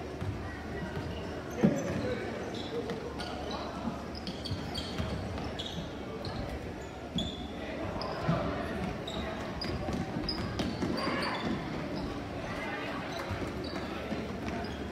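Basketball game in a gymnasium: the ball bouncing on the hardwood court and sneakers squeaking, over indistinct spectator chatter. A sharp knock about a second and a half in is the loudest sound.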